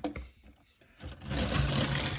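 Near silence for about a second, then a steady rubbing, rushing noise of the phone being handled and swung across the table.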